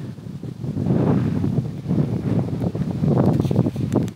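Wind buffeting the camera's microphone, a gusty low noise that swells and dips.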